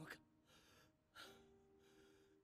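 Near silence: a faint breathy gasp at the start and again about a second in, over soft held music tones.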